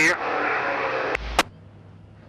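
Dirt-track race car engines running at low speed under a steady hiss, cut short by a sharp click and a low thump about a second and a half in. After that only a faint low hum remains.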